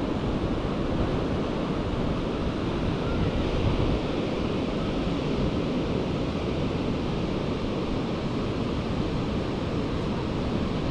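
Steady wash of ocean surf mixed with wind rumbling on the microphone.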